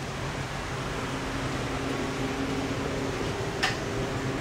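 Steady hum of running fans, a drone with a low electrical tone through it, as from tanning-bed cooling blowers or the salon's ventilation. There is a brief tick near the end.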